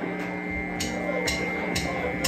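Drummer's count-in: three sharp ticks about half a second apart, at the tempo of the song that follows, over a steady held tone from the stage instruments and amplifiers, just before a rock band comes in.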